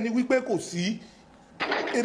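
Conversational speech: a voice talking for about a second, a brief pause, then a short hissy burst of sound near the end.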